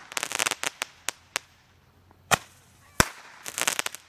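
A small consumer multi-shot aerial firework firing its shots: sharp bangs and quick runs of crackling. A rapid cluster of cracks comes at the start and another near the end, with a few single louder bangs in between.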